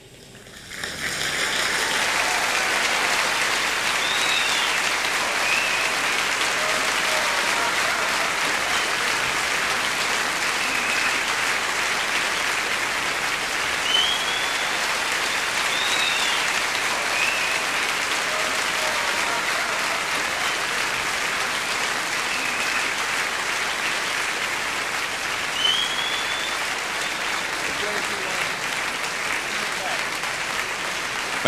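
Concert audience applauding. The clapping swells up within the first two seconds as the music ends, then holds steady, with a few brief high calls over it.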